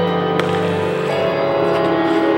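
Instrumental music accompanying a figure skating program, sustained notes held over several tones, with one short sharp click about half a second in.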